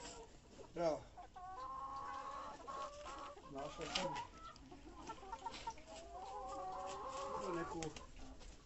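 A flock of Tetra laying hens clucking at close range, with several drawn-out calls and one loud falling squawk about a second in. A hoe scrapes and strikes the soil around four seconds in.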